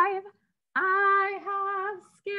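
A woman singing unaccompanied, holding nearly one pitch. A sung phrase ends, a short pause follows, then a long held note.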